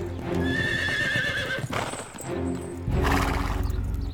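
A horse whinnying with a wavering call about half a second in, and hoofbeats near the end, over background music.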